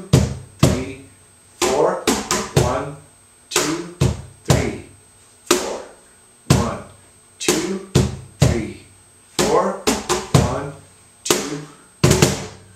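Cajón played with the hands in a slow tientos compás: sharp strikes, some single and some in quick pairs, about one or two a second, each ringing out briefly.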